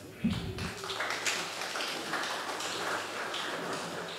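Light, scattered applause from a seated audience in a hall, starting about a second in and thinning out near the end, after a low thump just at the start.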